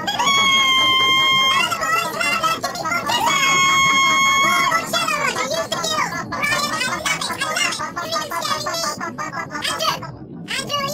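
High-pitched comic voices singing over music. There are two long held notes, one just after the start and one about three seconds in, then a quicker run of sung phrases.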